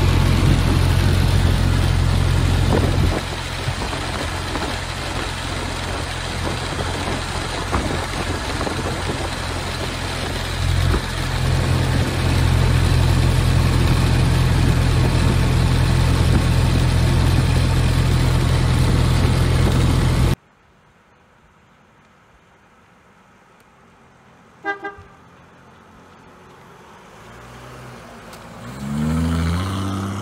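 Ford Model T's four-cylinder engine running at road speed under heavy wind rush, heard from on board the open car. The level drops about three seconds in and rises again around eleven seconds, then it cuts off abruptly after about twenty seconds. A short beep follows, and near the end a vehicle approaches and passes with its pitch falling.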